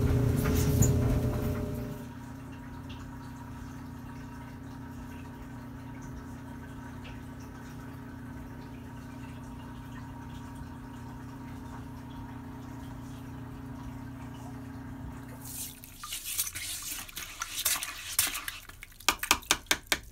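A clothes dryer running with a steady multi-tone hum that drops away about two seconds in, leaving a quieter steady low hum. From about sixteen seconds a toilet brush scrubs a porcelain toilet bowl, scraping, with a quick run of sharp knocks near the end.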